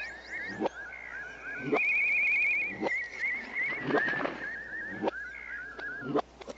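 Cartoon forest soundtrack played backwards: many rapid chirping, trilling animal calls overlap one another, like birds. Five sharp sweeping sounds come about a second apart.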